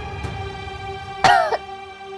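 A young woman coughs once, loud and short, about a second in, as her throat starts to itch. Background music holds a steady sustained note.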